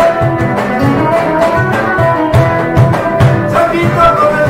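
Two acoustic guitars playing over a steady hand-slapped cajón beat.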